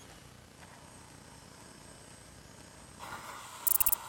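A faint hiss, then from about three seconds in a louder gas hiss and a short burst of rapid crackling clicks near the end: a gas torch lighter being used to light a firework battery's fuse.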